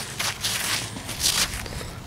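Scratchy rustling of a leather work glove handling and rubbing a small dug-up metal tag, in a few short bursts.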